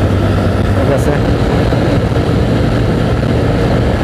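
Hero Splendor Plus XTEC motorcycle's small single-cylinder engine running steadily at cruising speed, under wind and road noise on the microphone.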